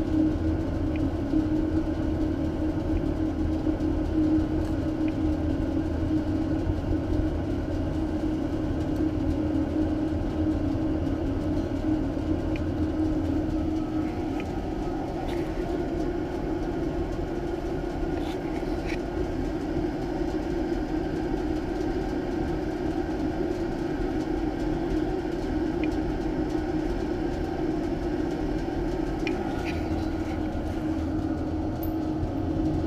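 Waste oil furnace burning at high heat, a continuous low rumble and hum from its burner, with a few faint ticks now and then.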